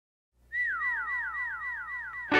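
A quick string of whistle-like tones, each sliding down in pitch and overlapping the next, about five a second, starting about half a second in after silence.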